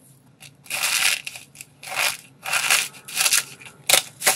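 Dry, crunchy soap curls and shavings crushed between the fingers, in about five separate crackling crunches after a quiet start.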